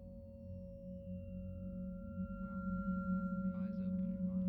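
Electronic drone of several steady sine-oscillator tones over a low hum, growing louder, with a higher tone coming in about a second in. Faint fragments of a recorded voice enter past halfway.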